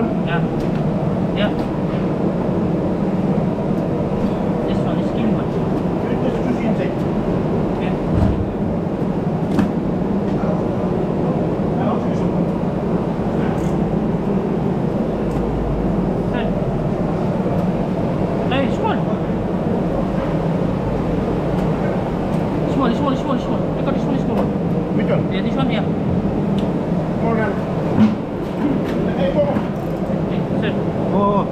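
People talking in the background over a steady low hum, with scattered small knocks and clicks as wet sea cucumbers are handled into a plastic crate.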